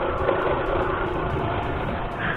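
Motorcycle engine running steadily at a gentle cruise, with the steady rush of wind and road noise over the camera microphone.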